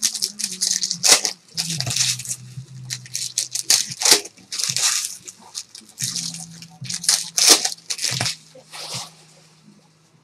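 Plastic wrapper of a 2013 Panini Prime football card pack crinkling and tearing as it is ripped open and handled, a rapid run of sharp crackles that thins out near the end.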